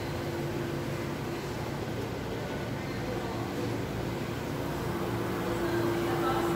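Steady mechanical hum with one constant low tone under a noisy wash: machinery or ventilation running in the processing hall.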